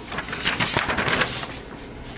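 A paper instruction sheet rustling and crinkling as it is handled and moved, a quick run of crackles over the first second or so, then quieter.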